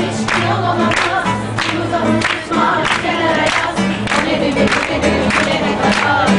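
A group singing together to guitar accompaniment, with steady low notes underneath and a sharp, even beat about every two-thirds of a second.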